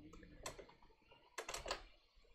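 Faint clicking of computer keyboard keys: one click about half a second in, then a quick run of several clicks in the second half.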